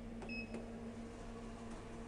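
A single short electronic beep from a Thyssenkrupp elevator, a third of a second in, with a light click just before and after it. Under it runs the elevator's steady low hum.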